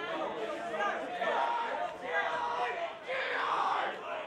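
Several voices shouting and calling out, with the loudest, most strained shout about three seconds in.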